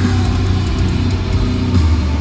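A loud live metalcore band playing distorted electric guitars, bass and drums through an arena PA, with heavy sustained bass.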